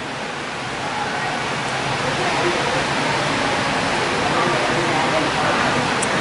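A steady rushing noise with faint voices in the background.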